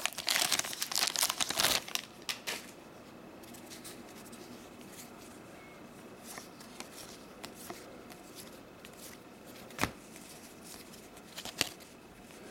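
Plastic wrapper of a trading-card pack being torn open and crinkled for about two seconds, then a few faint clicks of cards being handled.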